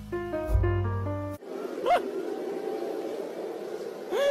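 Music, a melody of short stepped notes over a low bass, cut off abruptly about a second and a half in. It is replaced by a steady rumbling hum with one short rising-and-falling squeal.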